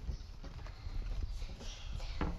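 Soft, irregular knocks and handling noise as a small child pulls a bunch of bananas out of a wire pull-out basket and steps away with them.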